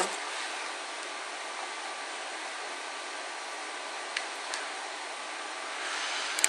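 Steady background hiss of room noise, with a faint click about four seconds in.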